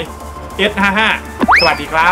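A cartoon "boing" sound effect, a quick whistle-like glide that sweeps up in pitch and falls back, about a second and a half in, over background music.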